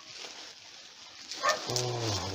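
Bubble wrap and cellophane rustling and crinkling as they are pulled back by hand, with a short sharper crackle about a second and a half in.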